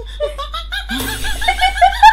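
A woman and a man laughing, a high-pitched giggle in quick repeated pulses that grows louder from about a second in.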